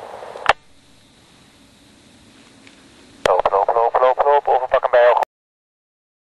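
A click about half a second in, then a voice calling out quick repeated syllables, loud and clipped, for about two seconds near the end.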